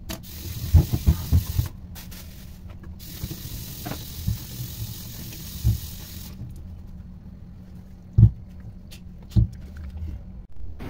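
Kitchen work at a counter: a few dull knocks and bumps scattered through, over a steady hiss that stops about six seconds in.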